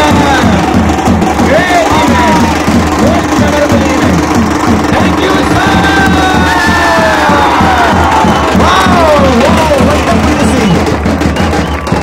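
Loud music with a steady beat of about three a second, mixed with a crowd of students cheering and shouting.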